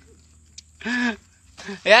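Mostly a man's voice: a short exclamation about a second in and the start of another word near the end, over faint background noise.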